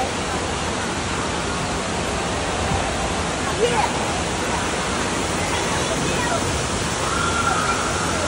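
Indoor water-park ambience: a steady rush of falling and splashing water from the slides and play structure, echoing under the roof, with scattered distant voices. A brief high-pitched voice cuts through a little past halfway.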